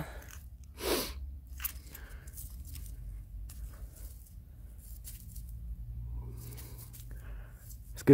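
Gloved hand digging a glass bottle out of crumbly ash-and-cinder dump soil: soft crunching and scraping of the dirt, with one louder rustle about a second in.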